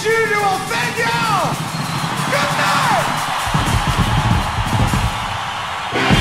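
Live rock band recording with a voice yelling over the music and two falling pitch glides in the first half. The bass and drums come in heavier about halfway through.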